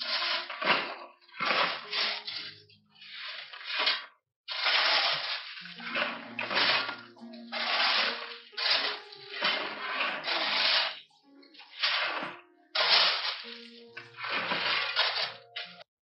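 Steel shovels scraping and scooping into a pile of gravel, about a dozen strokes, each a second or so long.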